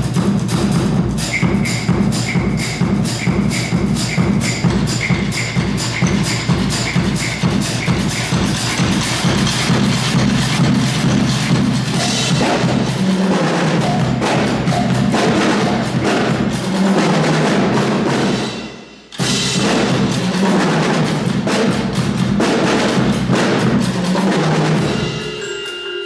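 A drum corps of snare drums and a bass drum playing a fast, dense percussion piece, with a brief break about three quarters through before the drumming cuts back in. Near the end, ringing pitched mallet notes from a marimba come in.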